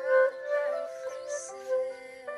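Concert flute playing a melody, its notes changing about every half second, with other pitched notes sounding underneath it.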